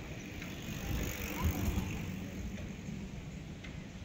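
Outdoor ambient noise: a steady low rumble with hiss, with no distinct event standing out.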